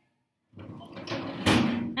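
Handling noise from the plastic blind jar being grabbed and moved close to the microphone: after a moment of dead silence, a rush of noise builds up and peaks in a sharp knock about one and a half seconds in.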